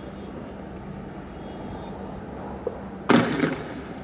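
A single loud shot about three seconds in from riot police firing tear gas, with a brief echoing tail, and a faint pop shortly before it.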